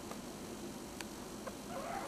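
A young puppy gives a short, high squeak near the end, after a few faint clicks.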